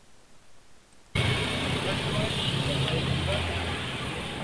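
Street recording that cuts in abruptly about a second in: a motor vehicle's engine running with people's voices over it.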